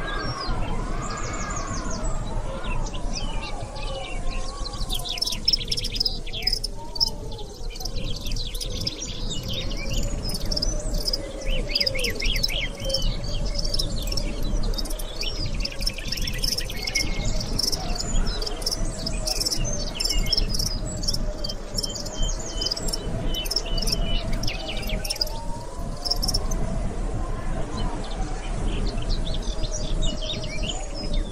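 Small birds chirping and twittering in quick runs of notes, over a soft, slowly wandering melody.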